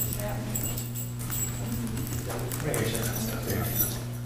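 Faint, indistinct voices murmuring over a steady low electrical hum, with the voices becoming more noticeable in the second half.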